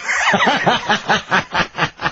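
A man laughing: a rapid run of ha-ha pulses, about five a second, that trails off near the end.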